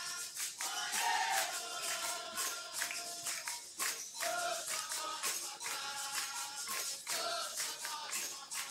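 Capoeira roda music from the bateria: atabaque drum, berimbau and pandeiro playing a steady rhythm with a rattling shaker, several sharp strokes a second, with voices singing short phrases over it.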